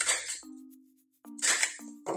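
Two short metallic clacks from a handheld stapler being worked on a photo: one at the start and one about a second and a half in, over quiet background music.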